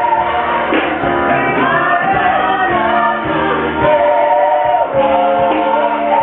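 Live gospel vocal group singing: a male lead singer at a microphone with backing singers holding sustained notes behind him.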